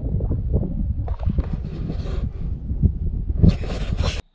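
Wind buffeting a camera microphone, with a heavy low rumble and irregular knocks and rustles from the camera being handled and moved. Bursts of hiss come through in the middle and again near the end.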